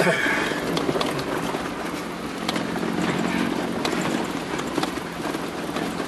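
Vehicle cabin noise while driving slowly over a rough dirt track: the engine running steadily, with scattered knocks and rattles as the vehicle bounces over the ruts.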